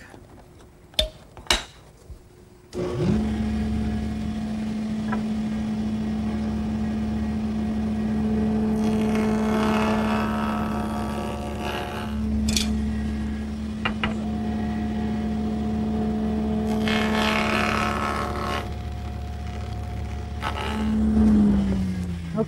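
Table saw fitted with a molding head cutter: after a couple of clicks the motor starts about three seconds in and runs with a steady hum. Two passes of wood stock through the cutter, milling flutes, bring a louder cutting noise, one around the middle and one later on. The motor winds down, its pitch falling, near the end.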